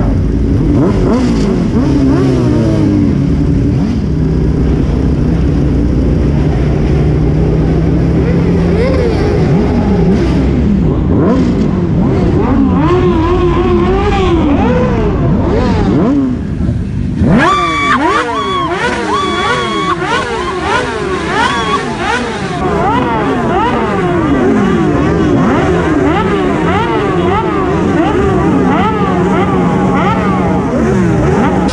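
A group of motorcycles riding together, their engines revving up and down through the gears, heard from one rider's bike. About halfway through the sound changes suddenly, and after that several engines rev up and down quickly at once.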